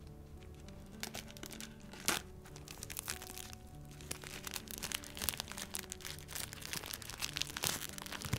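Fingers handling a shrink-wrapped spiral-bound sketch pad: the plastic wrap crinkles and crackles in many small, sharp clicks, the loudest about two seconds in, over soft background music.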